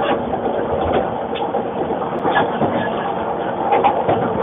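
Commuter train running, heard from inside the passenger carriage: a steady rumble and rush of the moving car, with several short clicks and knocks scattered through it.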